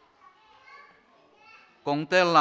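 Faint voices in a large hall, children's among them. Near the end a man's voice starts loudly over the microphone.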